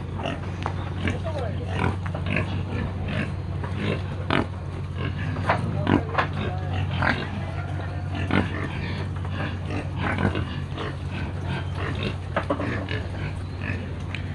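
Domestic pigs in a wooden pen grunting and feeding, with many short, irregular grunts and eating noises over a steady low hum.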